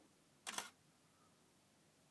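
A single DSLR shutter release, the Canon 5D Mark II firing one frame, a short sharp click about half a second in, with near silence around it.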